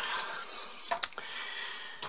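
Quiet handling rustle with a light metallic clink about a second in.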